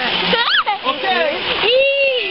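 Water splashing in a shallow stream, with a young child's high squeals and excited voices over it; one sharp rising squeal about half a second in.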